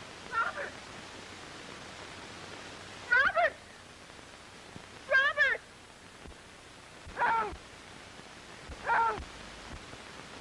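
A person's high-pitched cries for help, five short calls about two seconds apart over the hiss of an old film soundtrack: someone in trouble in the swamp.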